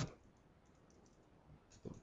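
Near silence with a few faint computer mouse clicks, the clearest just before the voice returns.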